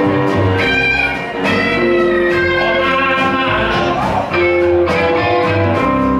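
Live band playing an instrumental passage of a slow ballad, led by plucked guitar, with long held notes over a steady bass.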